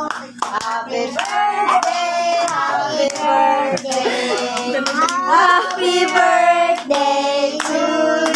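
People singing together and clapping their hands in a steady rhythm, about two claps a second.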